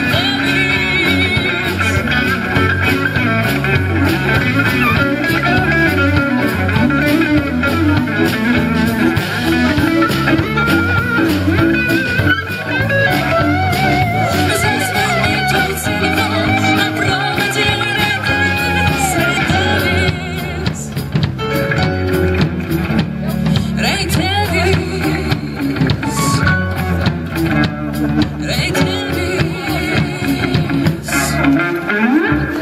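Live band playing a rock song with electric guitar, bass guitar, drum kit and keyboard, with no lyrics sung for most of it. The level dips slightly about twenty seconds in.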